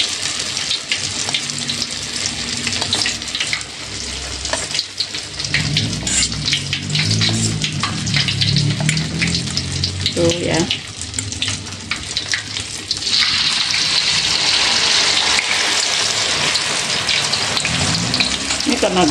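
Battered stuffed tofu deep-frying in a wok of hot oil: a steady crackling sizzle that grows louder and hissier about 13 seconds in, as another battered piece goes into the oil.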